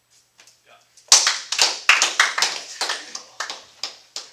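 A small group applauding in a small room, starting abruptly about a second in and thinning out toward the end.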